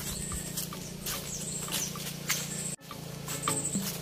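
Footsteps on dry leaves and grass, over a steady low hum and a few short high chirps. The sound drops out briefly just under three seconds in.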